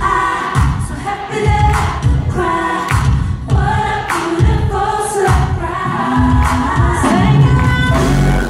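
Live R&B performance: a female lead singer with backing vocalists singing in harmony over a band with a heavy, pulsing bass beat.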